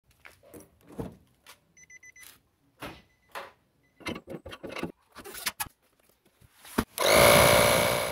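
Scattered knocks and clicks of hands working on a steel spare wheel, with two faint high beeps. About seven seconds in, a small 12 V portable tire-inflator compressor runs loudly and steadily for just over a second, then cuts off suddenly.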